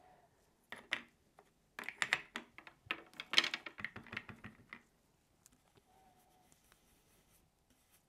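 Small clicks and scratchy taps of an ink cube and blending brush being handled and dabbed, in clusters over the first five seconds.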